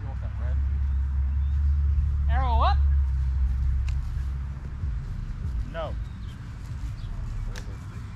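Short shouted calls from people's voices, one about two and a half seconds in and a shorter one near six seconds, over a steady low rumble that fades after about five seconds. A few faint sharp ticks are also heard.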